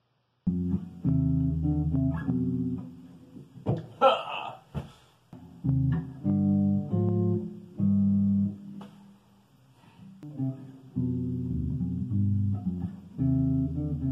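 Solo electric bass playing a cello étude, plucked notes in short phrases starting about half a second in, with brief pauses between phrases. A short scraping noise cuts in about four seconds in.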